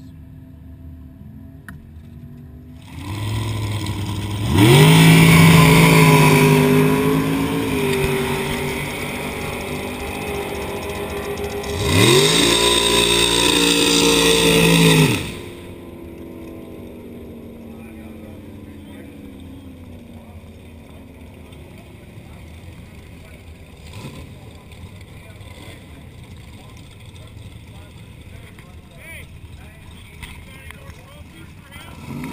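Drag racing car's engine revved up sharply and held at high rpm, twice, the first time a few seconds in and again around twelve seconds in, with a loud hiss over the top. It cuts off suddenly a little past halfway, leaving a low, steady engine rumble.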